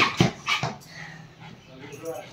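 A small white spitz-type dog giving three short barks in the first second.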